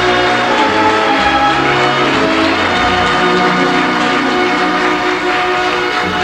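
Opera orchestra playing slow, sustained chords from the closing scene of an opera, heard on an old live recording.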